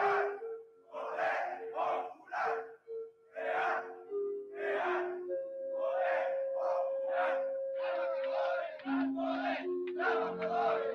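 A marching crowd shouting a slogan together in rhythm, about two shouts a second, over a slow line of held musical notes.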